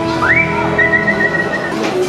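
Someone whistling: a quick rising whistle, then a held, warbling note for about a second, over steady background music.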